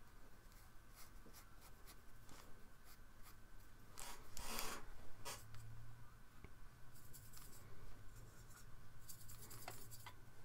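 Faint scratchy strokes of a thin paintbrush on watercolour paper, with a louder rustle lasting under a second about four seconds in. Near the end the brush works in the wells of a plastic mixing palette with a fine crackle.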